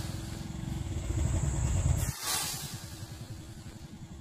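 Faint hiss of a small firework rocket burning as it flies away, with a brief louder hiss about two seconds in, over a low rumble.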